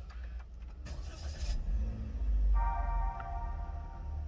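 Toyota Veloz instrument cluster's electronic start-up chime as the ignition is switched on, a steady multi-note tone held for about a second and a half near the end. Under it runs a low rumble, with a brief hiss about a second in.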